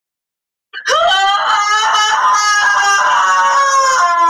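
A long, loud, high-pitched scream that starts about a second in and holds at one pitch.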